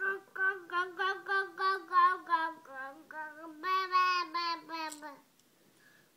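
A toddler jabbering in a sing-song voice: a run of short repeated syllables at a steady high pitch, about four a second, breaking off about five seconds in.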